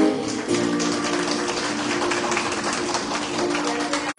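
Steel-string acoustic guitar playing alone, with held notes and quick strums, as the closing bars of a song.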